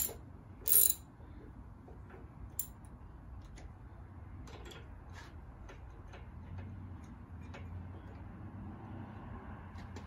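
Ratchet wrench with a spark plug socket backing a spark plug out of a Porsche 911 flat-six's aluminum cylinder head, with the plug turning out easily. There is one sharp click about a second in, then light, irregular ratchet clicks about twice a second.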